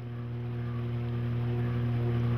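Boat engine running at a steady drone, a low hum with a noisy wash over it, growing steadily louder.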